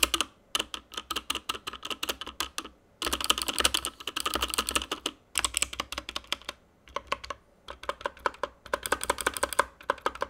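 Motospeed CK61 budget 60% mechanical keyboard, its large stabilized keys (Enter, Backspace, right Shift) pressed rapidly again and again in several bursts of quick clicking. The clatter shows off its stabilizers, which are really pretty bad.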